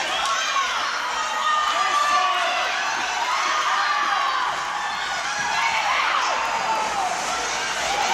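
Hockey spectators shouting and cheering, many voices overlapping at once without clear words.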